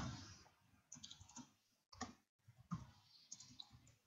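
Faint, scattered clicks of a computer keyboard being typed on, a few separate keystrokes over a near-silent room.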